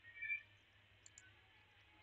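Faint computer mouse clicks over quiet room tone, with a brief, faint high-pitched chirp about a quarter second in.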